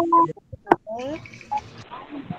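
Children's voices coming through a video-call connection, with a short sharp click about two-thirds of a second in.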